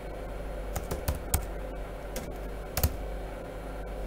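Computer keyboard being typed on: several separate key clicks at an uneven pace as a terminal command is entered, over a steady low hum.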